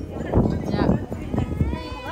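Voices in the street with a high-pitched child's call rising near the end, over low rumble and knocks from the hand-held phone's microphone.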